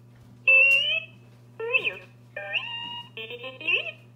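Star Wars droid beeping and whistling in the manner of R2-D2: four short phrases of electronic chirps, warbles and rising whistles.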